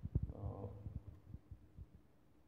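A run of low, dull thumps, close together at first and then thinning out and fading away over the two seconds.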